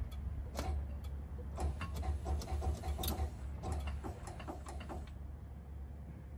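A failed air-start attempt on a Detroit Diesel 6-71 two-stroke bus engine: a low drone with irregular clicking that dies away about five seconds in without the engine catching. The air starter has run out of air.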